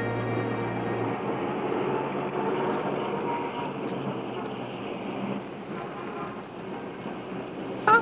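Street bustle: a steady noise of traffic and passing crowds. A held music chord fades out about a second in.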